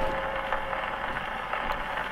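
Surface noise of a Pathé vertical-cut record on an Edison phonograph: a steady hiss of the stylus in the groove with a few faint clicks, as the record runs on after the music has ended.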